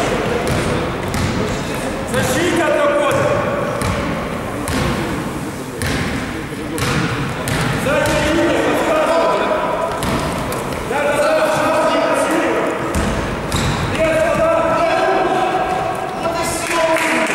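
Basketball being dribbled and bouncing on a sports-hall court during a game, with players' shouts ringing out in the echoing hall several times.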